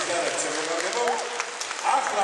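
Audience clapping as a sung song ends, with short voices calling out in the crowd about one and two seconds in.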